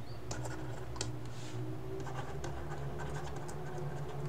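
Stylus scratching and tapping on a tablet surface as words are handwritten: soft, irregular strokes and ticks over a low, steady hum.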